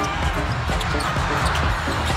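Basketball game broadcast sound: a ball bouncing on the hardwood court over arena noise, with a background music track's low beat running under it.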